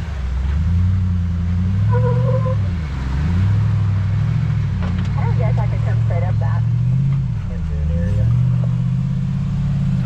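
Jeep engine running under changing throttle on a rock trail, its pitch rising and falling several times, with brief laughter and voices over it.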